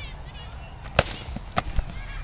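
Practice swords striking in sword-and-shield sparring: one sharp, loud crack of a blow landing about a second in, then two lighter knocks in quick succession.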